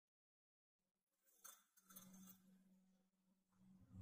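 Near silence: faint room tone with a low steady hum, and a faint brief hiss about a second and a half in.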